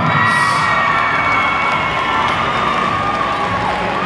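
Crowd cheering and screaming, with many high-pitched voices shouting over one another at a steady, loud level.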